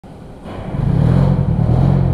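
Detroit Diesel 4-53T two-stroke turbocharged diesel engine running, heard from outside through the shop's open bay door. It swells in level about half a second in, then holds a steady note.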